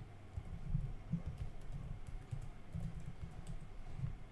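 Computer keyboard typing: a run of irregular keystrokes.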